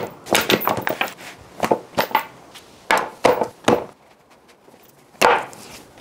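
Irregular sharp knocks and clacks on a wooden tabletop, about a dozen over the first four seconds, a few with a short ring, then a lull and one more knock about five seconds in.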